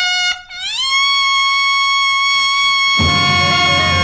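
A Dixieland trumpet plays a solo note that slides up in pitch over the first second and is then held steady. About three seconds in, the band comes in under it.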